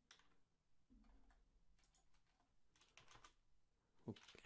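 Faint typing on a computer keyboard: a few scattered keystrokes, with a short run of them about three seconds in.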